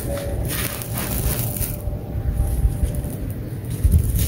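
Dry, gritty red dirt clods crushed and crumbled by hand, the crumbs crunching and pattering down. The crunching is busiest at the start and again near the end, with a quieter lull in the middle.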